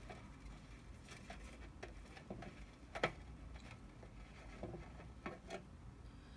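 Faint, irregular light clicks and taps of a clear plastic tub being handled, with one sharper click about three seconds in.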